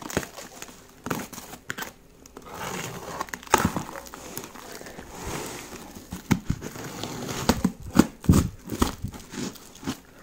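Shiny plastic wrapping film on a parcel crinkling and tearing as it is pulled open by hand, with a run of sharp crackles and snaps among the rustling.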